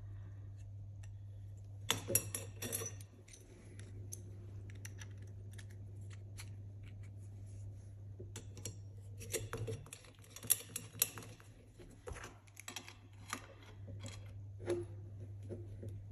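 Small clicks and knocks from a metal pipe insert, plastic pressure pipe and a brass compression fitting being handled and pushed together, then a metal adjustable spanner fitted onto the compression nut. The clicks come in a few short clusters over a steady low hum.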